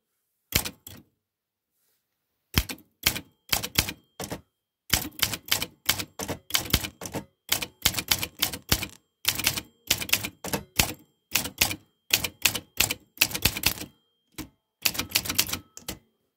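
Olympia SM9 manual typewriter being typed on, freshly cleaned and restored to working order: sharp separate key strikes of the type bars against the platen, a few per second in an irregular rhythm. After a lone stroke near the start there is a pause of about two seconds, then typing runs on with only brief breaks.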